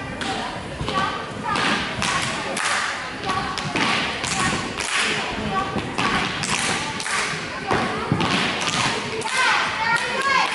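Children's tap shoes striking the dance floor in an irregular run of taps and thumps, about two a second, with no music behind them.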